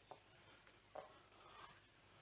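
Near silence: faint room tone, with one very faint short sound about halfway through.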